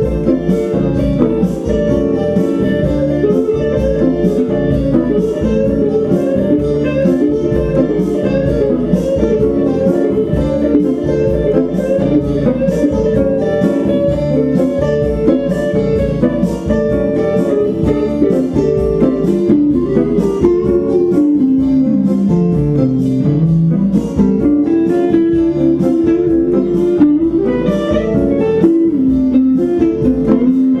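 Instrumental Samoan guitar music: a lead guitar plays the melody over a steady strummed acoustic guitar rhythm.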